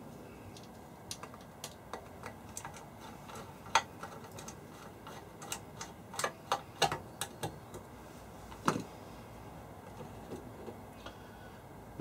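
Irregular light clicks and taps of fingers unscrewing and handling the fittings of a decade resistance box's metal case and Bakelite front panel as it is taken apart. The most distinct clicks come near the middle and about three quarters of the way through.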